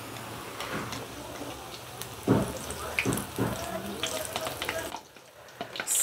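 Mung dal vadas deep-frying in hot oil: a steady sizzle of bubbling oil, with a few sharp clicks in the middle, cutting off about five seconds in.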